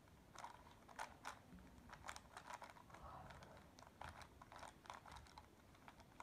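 A plastic 3x3 speed cube being turned by hand: faint, irregular clicks and clacks of its layers snapping round, a few a second, with a short stretch of rattling about three seconds in.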